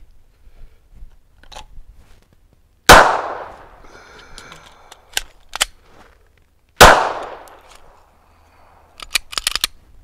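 Two 9mm shots from a Glock 19X pistol, about four seconds apart, each ringing out and fading slowly. Between the two shots come sharp clicks of a magazine reload, and there is a quick run of further clicks near the end.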